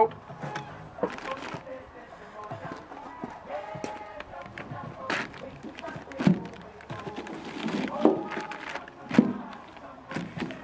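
A song with singing playing faintly in the background, with a few short knocks and plastic rustles as vegetables are set down on a plastic sack in a metal wheelbarrow; the sharpest knock comes near the end.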